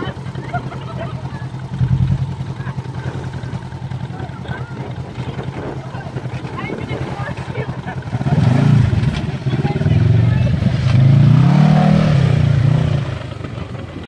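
Polaris RZR side-by-side engine running at low, steady throttle with a fast chug as it creeps down a steep rock face, then revving up and down, louder, in the last few seconds as it levels out at the bottom.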